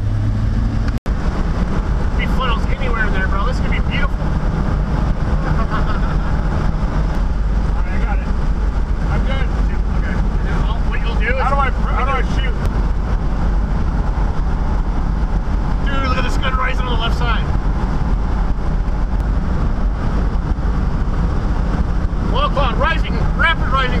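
Steady engine and road noise inside the cab of the Dominator 4 storm-chasing vehicle as it drives at speed, with a short break about a second in. Voices talk faintly now and then over the drone.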